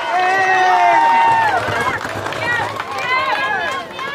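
High-pitched voices calling out in long, sliding tones, several overlapping, with a busier stretch in the last two seconds.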